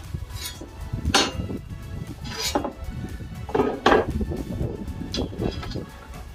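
Flat steel plates of a folding fire pit clanking and scraping against each other as they are fitted together, with a few separate metallic knocks about a second in, midway and near four seconds.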